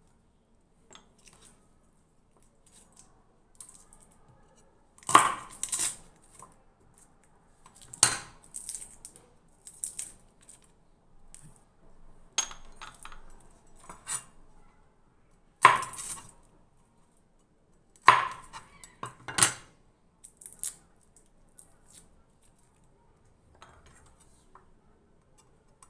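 Garlic cloves being peeled by hand at a kitchen counter: faint rustling and ticks of papery skin, broken by about five sharp knocks and clinks of cloves and peel against a plate and cutting board.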